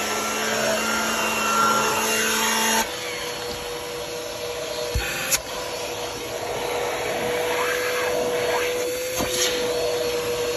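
Vacuum cleaner running with a turbo pet-hair brush attachment, worked over car floor carpet. A little under three seconds in, the brush's hum cuts out and the sound drops, and the suction carries on through the bare hose end with a steady whine. Sharp knocks come twice around the middle and once near the end.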